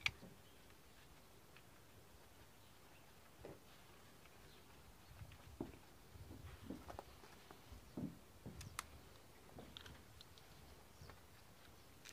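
Near silence with a few faint, scattered clicks and light knocks from parts being handled while a coil pack is refitted onto the engine.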